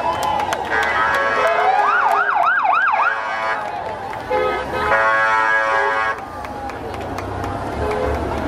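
Emergency-vehicle siren sounding about four quick rising-and-falling sweeps around two seconds in, over street-crowd noise and voices. A steady horn-like tone sounds twice, the second time near six seconds in.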